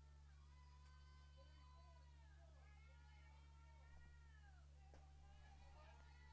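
Near silence: a steady low electrical hum, with faint, distant voices calling out in drawn-out, rising and falling tones.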